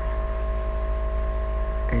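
Steady electrical mains hum with a few faint held tones and nothing else, the noise floor of the voice-over recording between phrases.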